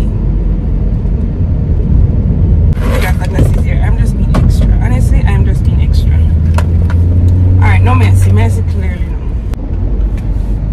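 Road and engine rumble inside a moving car's cabin, with a deeper drone swelling for a couple of seconds in the second half. A voice is heard briefly twice over it.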